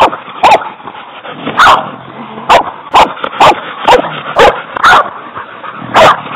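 Hog-hunting dog barking repeatedly, about nine short, sharp barks at irregular half-second to one-second gaps, baying at a caught hog.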